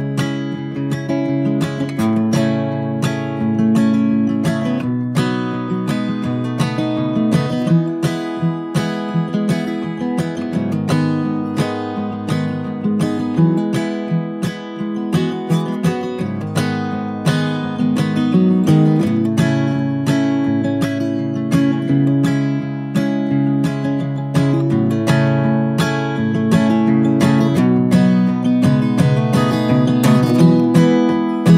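Background music: acoustic guitar, plucked and strummed steadily.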